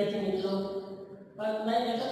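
A man's voice speaking in drawn-out, sing-song tones, with a short pause a little after a second in.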